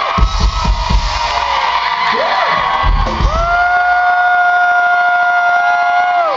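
Live band music with a crowd cheering: heavy drum hits in the first second and again about three seconds in, then one long held high note.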